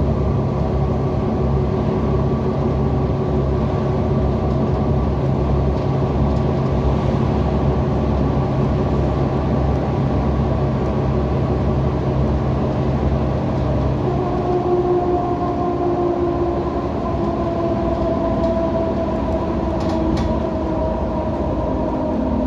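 Cabin noise inside a Heuliez GX127 diesel city bus on the move: a steady engine drone with road rumble. About two-thirds of the way through, the engine note changes and higher tones come in.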